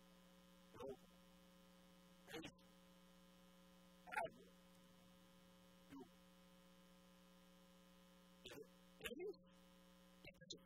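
Near silence with a steady electrical mains hum in the microphone and sound-system feed, broken by about six brief, faint sounds spread through the pause.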